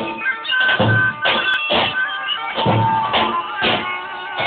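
Zurnas (curle), the double-reed folk shawms, playing a shrill melody over deep strokes of a large double-headed drum (lodër/davul) in a steady dance rhythm.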